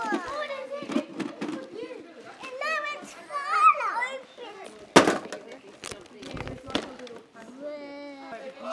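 Young children chattering with high, sing-song voices, with a sharp knock about five seconds in and a few lighter clicks after it.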